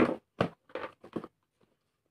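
Hard plastic tool case knocked and clicked by hands: four short plastic knocks about two a second, the first the loudest.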